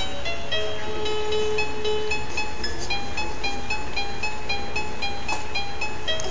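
Musical crib mobile playing a simple electronic melody of short single notes, one after another, over a steady low hum.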